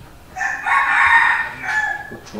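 A rooster crowing once, a high-pitched call lasting about a second and a half.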